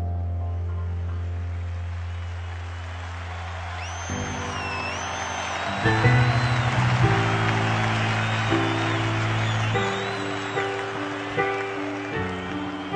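A low held note fades out, then about four seconds in a piano starts playing chords in a lively rhythm. People around it cheer and whoop over the playing.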